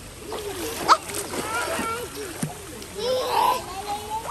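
Water splashing in a swimming pool as children play in it, with the loudest splash a little after three seconds in, among high-pitched young children's voices.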